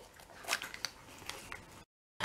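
Faint small clicks and rustles of hands handling kitchen items on a table, about three light ticks, then a sudden dead silence at an edit cut near the end.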